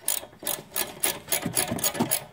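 Small-drive socket ratchet clicking in a quick, uneven run of clicks while it unscrews the upper fastener of a rear anti-roll bar link.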